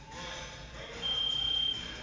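Gym interval timer giving one long, high beep about a second in, signalling the start of a timed countdown.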